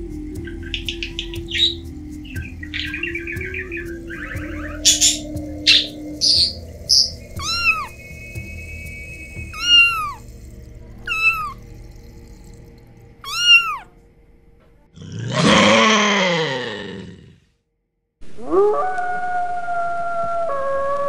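A run of animal calls: parrot chirps and squawks in the first seconds, then a kitten meowing four times, each meow a short rise and fall. About 15 s in comes a louder, drawn-out call falling in pitch, and after a second's pause a wolf starts a long, steady howl.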